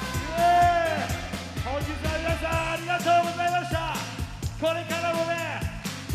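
A man singing an upbeat pop song into a microphone over amplified backing music with a steady, fast beat.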